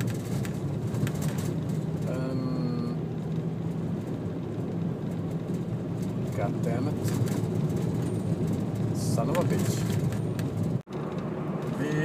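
Steady low drone of engine and road noise inside the cabin of a Volvo V70 D5 being driven. A brief pitched sound comes about two seconds in, and the sound cuts out for an instant near the end.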